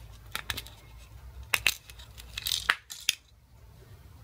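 Handling noise from a small circuit board being shifted against its plastic charger case: a few scattered light clicks and a short rustle.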